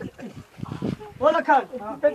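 People's voices calling out in short bursts, with one loud rising-and-falling call about a second and a half in.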